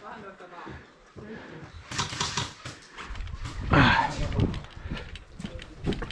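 A person's voice calling out briefly about four seconds in, with a falling pitch, among scattered short clicks and knocks.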